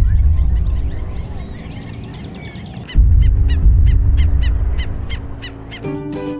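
Wetland birds calling, likely Hawaiian stilts (ae'o): scattered chirps, then in the second half a run of sharp, evenly repeated calls, about four a second. A deep low rumble is the loudest sound; it comes in suddenly at the start and again about three seconds in.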